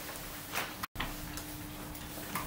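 Pen scratching and light ticks against paper and the table as a contract is signed, faint over room hum, with a brief dropout in the sound a little before the middle.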